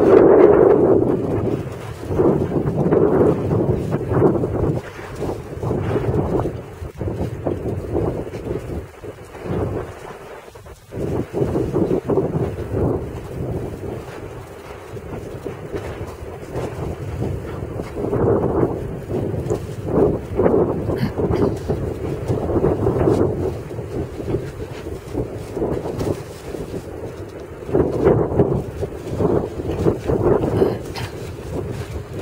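Wind buffeting the microphone, a rumbling rush that rises and falls in gusts, with a brief lull about ten seconds in.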